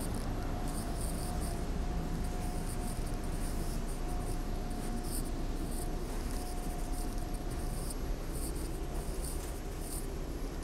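Interior running noise of a TTC T1 subway car: a steady rumble and hiss with a thin, steady mid-pitched whine, and faint high ticking repeating through it.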